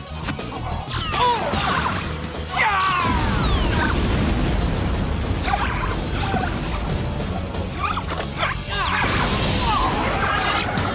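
Fight-scene sound effects over background music: sharp hits and whooshes, then from about three seconds in a long, low explosion as a pyrotechnic blast throws smoke and sparks.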